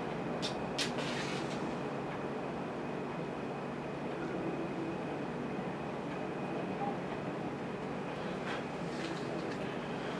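A match struck on its box, two short scrapes about half a second apart near the start as the match catches to light candles, over a steady low background rumble.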